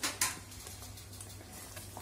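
A wooden spoon knocking twice against the side of a metal kadai, about a quarter second apart, then light stirring scrapes in thick curry. A low steady hum runs underneath.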